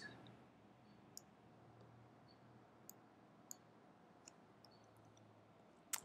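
Faint computer mouse clicks, about six scattered over a few seconds, against near-silent room tone with a faint low hum.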